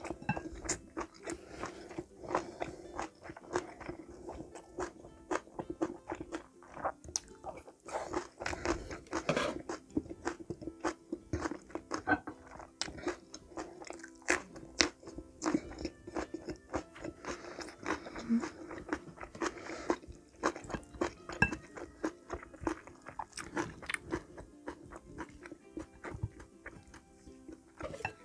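Close-up chewing and crunching of food, with frequent sharp crisp bites, including a bite into a raw green chili pepper about midway.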